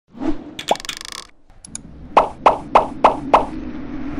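Animated logo intro sound effects: a soft hit, a quick sweep and a bright sparkling shimmer, then five short sharp hits in a row, about three a second, over a low steady hum.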